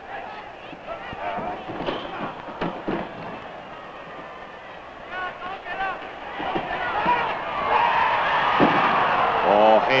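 Arena crowd at a professional wrestling match: a steady noise of many voices with scattered shouts, swelling louder over the second half. It is heard through an old 16 mm optical film soundtrack.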